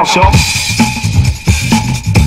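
Old-school Chicago house music: a steady drum beat of kick and snare, about two beats a second, over a pulsing bass line.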